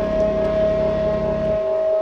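Roland GAIA synthesizer holding one steady, siren-like note at the end of a live song. The low end of the band underneath cuts out about one and a half seconds in, leaving the held note ringing alone.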